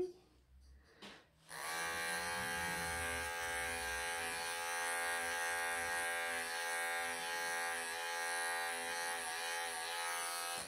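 Wahl cordless pet clippers switching on about a second and a half in and running with a steady electric hum while clipping tight mats out of a Persian cat's long coat.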